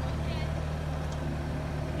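Propane forklift's engine idling steadily with an even, low hum.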